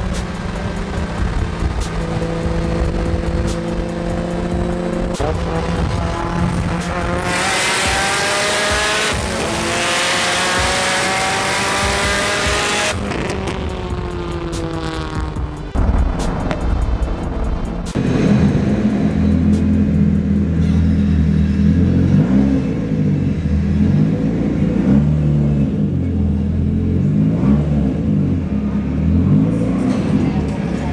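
A drift car's engine pulling hard, its pitch climbing for several seconds in the middle before falling away as it lets off, with music playing throughout.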